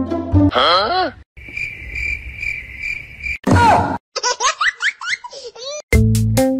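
Squeaky rubber pig toy squeezed: a short wavering squeal, then a long steady high-pitched squeal, followed by a run of quick rising chirps like laughter.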